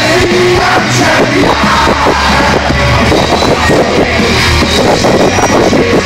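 Heavy rock band playing live with electric guitars, loud and dense with a heavy low end, heard from within the crowd.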